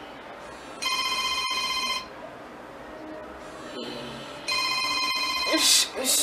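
A smartphone ringtone: two electronic rings, each just over a second long, about three and a half seconds apart. A woman's voice, woken by it, starts near the end.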